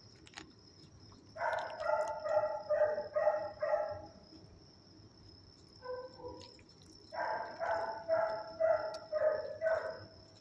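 A dog giving two runs of about six short, high-pitched yips each, the first starting about a second and a half in and the second about seven seconds in, with a single brief yip between them. A faint steady high-pitched tone runs behind.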